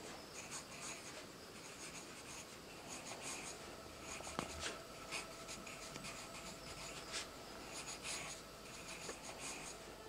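Faint scratching of a pencil writing by hand on notebook paper, in runs of quick short strokes with brief pauses between them.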